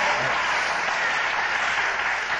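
Live studio audience applauding steadily after a punchline.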